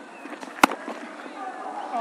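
A single sharp crack of a cricket bat striking the ball a little over half a second in, over the steady murmur of a stadium crowd.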